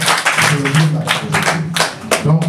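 A small group clapping in quick, uneven claps over a man's raised voice.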